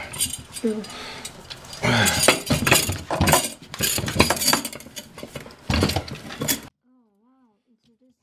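Metal clinks and knocks from a fire extinguisher being handled in its metal mounting bracket. The sound stops abruptly near the end.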